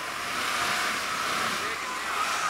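A Jeep running steadily as it drives up out of a snowy ditch, its engine and tyres working through the snow.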